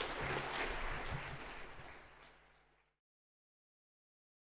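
Audience applauding, fading away over about two and a half seconds and then cut off to dead silence.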